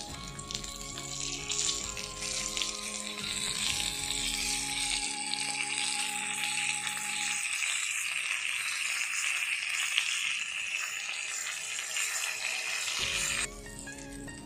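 Whole fish sizzling as it shallow-fries in hot oil in a flat pan, a steady hiss that cuts off shortly before the end. Background music plays over the first half and comes back at the very end.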